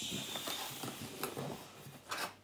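Soft knocks and scrapes as an unpainted seahorse money box is turned around on a table, with one sharper click a little over a second in. A faint steady high tone runs through the first second or so.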